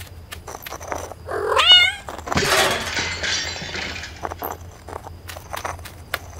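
A cat's yowl that rises and wavers in pitch about a second and a half in, followed by a louder burst of rushing noise that dies away over about two seconds.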